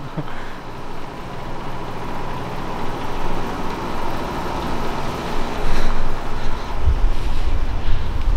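Street traffic noise: a steady hum, with a low rumble that grows louder over the last few seconds.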